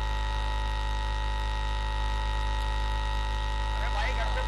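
Steady electrical mains hum from a stage microphone and PA system: a low, unchanging buzz with a row of higher tones above it.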